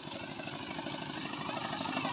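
An engine running with a fast, even chug, growing slowly louder.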